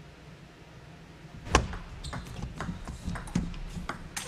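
Table tennis rally: sharp clicks of the celluloid-type ball struck by rackets and bouncing on the table. The loudest click comes about one and a half seconds in, followed by quicker, lighter clicks about three a second.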